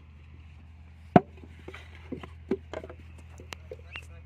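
Wet clay being handled for hand-moulded mud bricks: one loud thump a little over a second in, then a run of softer, irregular knocks and slaps.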